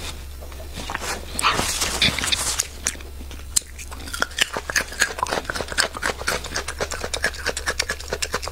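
Close-miked crunching of a raw garlic bulb in the mouth: a loud rough bite about a second and a half in, then from about halfway a fast run of crisp chewing crunches, several a second.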